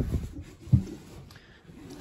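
Battery cover being pulled off and handled: soft rubbing and a short knock about three-quarters of a second in, followed by a quieter stretch.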